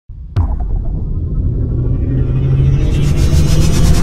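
Cinematic logo-intro sound effect: a sudden impact hit, then a deep rumbling drone that slowly swells, with a high shimmering sweep building over it in the second half.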